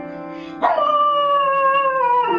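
A dog howling along to music: one long howl starts sharply just over half a second in and slowly falls in pitch, over steady sustained notes of the accompaniment.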